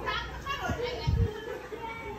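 Children's voices chattering and calling while playing, with a couple of dull low thumps about a second in.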